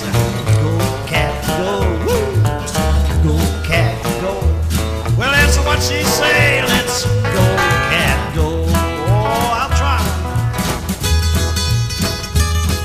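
Rockabilly instrumental break: a lead guitar plays a solo with bent notes over a steady stepping bass line and rhythm backing.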